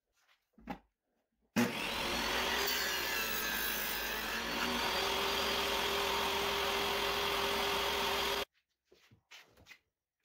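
Table saw running and cutting a joint into the end of a 2x6 strip. It starts abruptly about a second and a half in, its pitch wavers during the first couple of seconds, and it then holds steady until it cuts off suddenly near the end.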